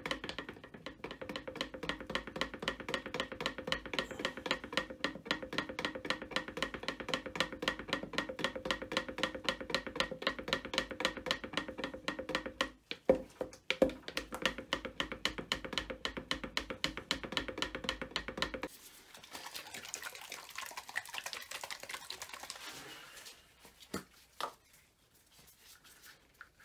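Stir stick scraping and knocking around a plastic mixing cup of epoxy resin in a fast, even rhythm of several strokes a second. The stirring stops abruptly a little over two-thirds of the way in, followed by fainter rustling and a couple of light knocks near the end.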